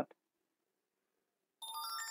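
Near silence, then about one and a half seconds in a short electronic notification chime of several ringing tones sounding together, lasting about a second.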